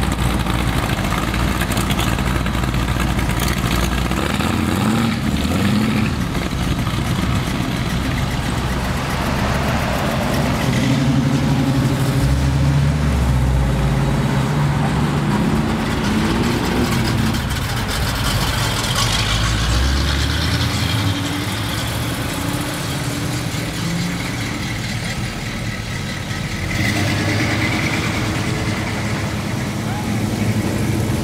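Engines of several cars and trucks idling and revving as they drive past one after another, with changes in sound where one vehicle gives way to the next.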